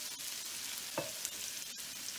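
Cabbage, onions and carrots frying in bacon grease in a skillet, a steady soft sizzle. A faint tick comes about halfway through.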